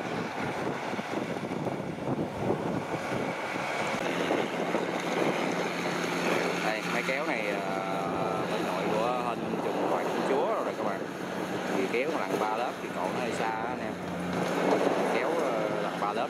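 Kubota rice combine harvester engine running steadily in the field, with wind on the microphone. Indistinct voices come and go through the middle.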